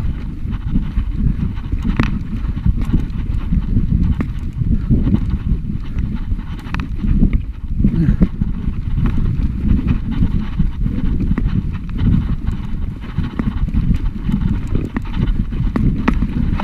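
Mountain bike riding over a loose, rocky stone track: tyres clattering on the stones and the bike rattling with many small knocks over a steady low rumble of vibration on the handlebar-mounted camera.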